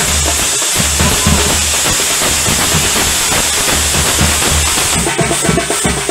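Procession drums of a chenda and band ensemble playing a lively rhythmic beat, with heavy bass-drum strokes under a steady high hiss.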